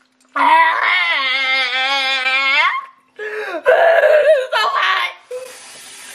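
A person wailing in pain from the burn of extremely hot wings: one long, wavering wail, then a second, more broken moaning cry. A faint steady hiss starts near the end.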